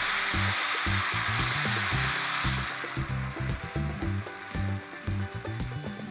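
Ragi batter sizzling as it is poured onto a hot iron griddle pan. The hiss is strong at first and dies down after about three seconds, with background music underneath throughout.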